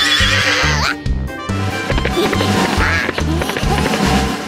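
Upbeat background music with a steady bass beat, with a cartoon horse whinny sound effect, falling in pitch, during the first second.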